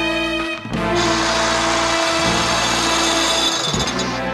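Dramatic score music, joined about a second in by a harsh, steady mechanical whirring grind of a rope winch hauling two people up on its line, which cuts off near the end. The winch is straining under the load, enough that its pulley overheats.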